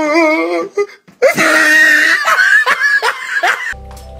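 A drawn-out, wavering "ohh" from a man's voice, then loud laughter and hollering from several men. Background music with steady low notes comes in near the end.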